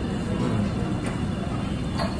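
Steady low rumbling background noise of a restaurant room, with a faint click about a second in.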